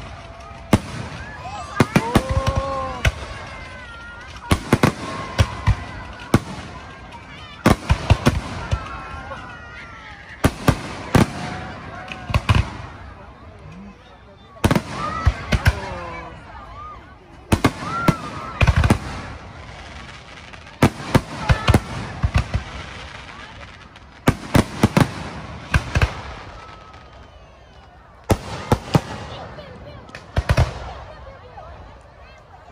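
Aerial firework shells bursting in quick clusters of sharp bangs every second or two, each cluster fading out before the next.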